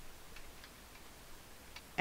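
A handful of faint, isolated computer keyboard keystrokes as the HTML paragraph tag is typed, spaced irregularly through the two seconds.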